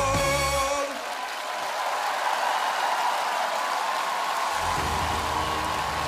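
A singer's final held note with the band behind him ends about a second in, and a studio audience takes over with applause. Low backing music comes in under the clapping near the end.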